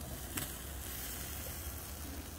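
Meat sizzling on a wire grill over glowing charcoal, a steady even hiss, with a single light click about half a second in.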